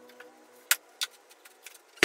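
A few sharp clicks and light knocks from hand work at a workbench, two louder ones about a third of a second apart near the middle.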